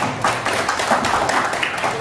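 Audience applauding, many hands clapping in a dense, continuous patter.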